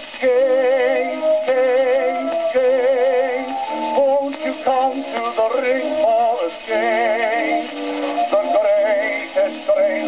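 An early acoustic-era gramophone disc of a music hall song playing. The sound is thin and narrow, with no deep bass and no high treble, and the melody lines waver with vibrato.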